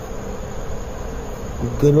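A steady buzzing hum over an even hiss, holding at one level, with a man's voice starting near the end.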